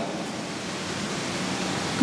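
A steady, even hiss of noise with no voice in it.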